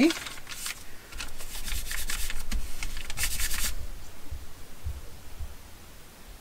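Hands rubbing and pressing layered, freshly glued paper flat against a tabletop, a run of dry scraping, rustling strokes that stops about four seconds in.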